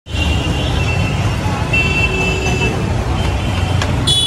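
Street ambience: a steady low rumble of road traffic, with a thin high-pitched tone running through it.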